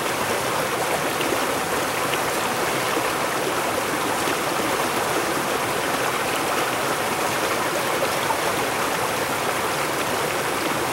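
A partly iced-over creek rushing steadily over rocks and around shelves of ice.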